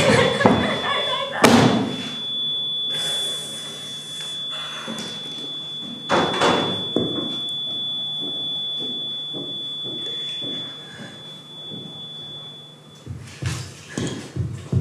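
Two heavy knocks or thumps on a wooden stage, the first about a second and a half in and the second about five seconds later. A steady, thin, high-pitched tone runs under them and stops near the end.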